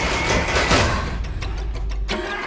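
Horror trailer score and sound design: a low rumbling drone under a noisy swell that peaks about a second in, then rapid stuttering flickers that cut off abruptly at the end.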